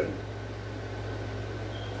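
Steady low hum with a faint even hiss: room background noise.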